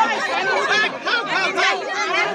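Several people chattering and talking over one another at close range.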